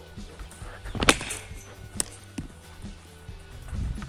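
A cricket bat striking the ball with a sharp crack about a second in, followed about a second later by a second short, sharp knock, over background music with steady low tones.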